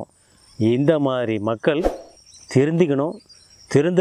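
A man talking in short phrases with pauses, over a faint, steady high chirping of crickets in the background. One sharp click comes just before the middle.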